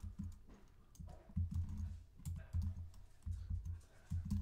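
Typing on a computer keyboard: a run of uneven keystrokes.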